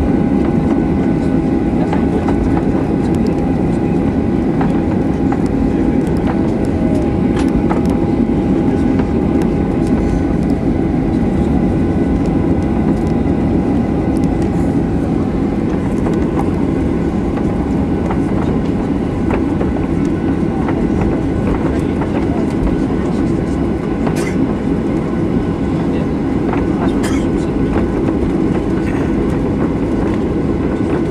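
Inside the cabin of a Boeing 737-800 taxiing on the ground: a steady loud rumble from the airframe and wheels rolling over the taxiway, with the CFM56 engines at low power giving a steady whine. A couple of sharp clicks come near the end.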